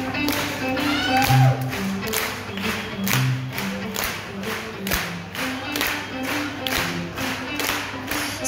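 Live band playing an instrumental passage of a pop-rock song: electric guitar, bass and drums, with a steady beat about two a second.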